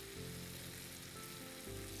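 Diced bottle gourd and fresh chopped tomatoes sizzling steadily in oil in a non-stick pan.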